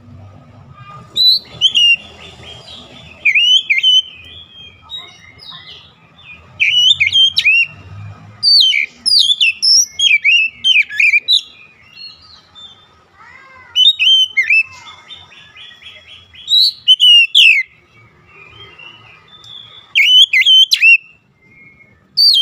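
Oriental magpie-robin singing: loud phrases of sharp, fast-sliding whistled notes, each one to two seconds long, about seven of them with short pauses between.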